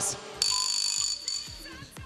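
Quiz show answer-buzzer signal: a high electronic tone that comes in suddenly about half a second in, holds steady, then fades out within about a second.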